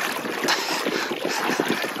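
Water sloshing and splashing around legs and a boat hull as a small boat is walked by hand through shallow water, a steady noisy wash with small irregular splashes.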